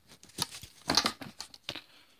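Scrapes and knocks of a Ford CVH aluminium cylinder head being turned over on a wooden board, mixed with handling noise, in a few short irregular bursts about half a second in, around one second and near the end.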